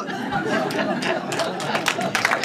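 A small audience laughing and murmuring together, with a few claps starting toward the end.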